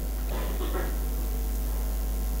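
Steady low electrical mains hum from a microphone and sound system, with a faint, brief sound about half a second in.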